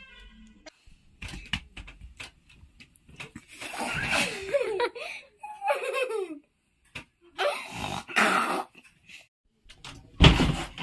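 A girl laughing in two bursts, the longer one about three and a half to six and a half seconds in, with a few light knocks before it.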